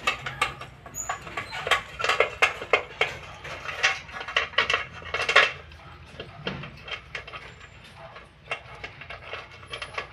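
Dog eating rice mixed with fish from a stainless steel bowl: quick, irregular clinks and scrapes against the metal bowl as it eats. The clinks ease off for a couple of seconds past the middle and pick up again near the end.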